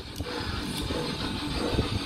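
Soft background music at a steady level.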